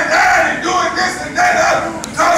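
A man's voice in impassioned shouted preaching: loud, high, drawn-out sing-song phrases, about three in two seconds.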